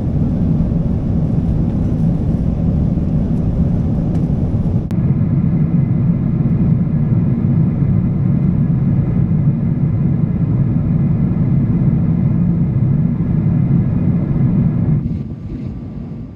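Steady low rumble of a Boeing 777-300ER's cabin in cruise: engine and airflow noise. The higher hiss above it drops away suddenly about five seconds in, and the sound fades near the end.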